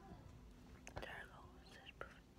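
Faint whispering, near silence, with a light click about a second in as the recording phone is handled.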